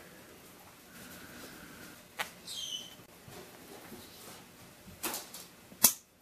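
Bird leg-band cutters working on a lineolated parakeet's leg band: a small click, then a short, high, falling chirp from the parakeet, and near the end a sharp snap as the cutter cuts through the band.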